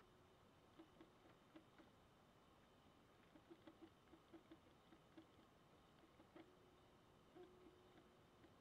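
Near silence, with faint ticks of a computer mouse's scroll wheel and clicks as a page is scrolled, a run of them coming about three a second midway.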